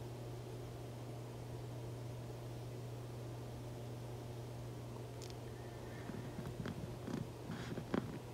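A steady low hum, with a few faint soft noises in the last few seconds.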